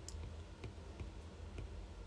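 Stylus tip tapping on a tablet's glass screen during handwriting, faint clicks about three a second, over a steady low hum.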